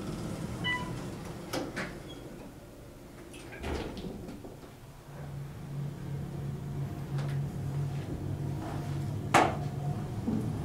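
Otis hydraulic elevator car: a short beep, then the car doors sliding shut with a thump about four seconds in. From about five seconds a steady low hum sets in as the car starts to move, with a sharp click near the end.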